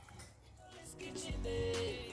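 Background music fading in about halfway through, with held notes, a bass line and drum hits.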